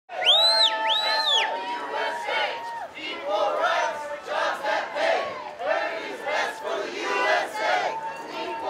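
Crowd of protest marchers shouting and chanting together, many voices overlapping, with two high shrill calls in the first second and a half.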